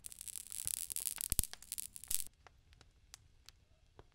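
Intro-animation sound effect: a burst of crackling, hissing noise with sharp snaps that cuts off suddenly a little over two seconds in, leaving only faint scattered clicks.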